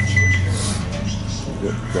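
High electronic beeping from a diner kitchen appliance, a couple of short beeps in the first half second that end a longer run of beeps, over a steady low hum of kitchen equipment.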